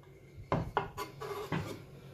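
A few light knocks and clatter of a kitchen knife and a plastic food tub being handled on a wooden cutting board.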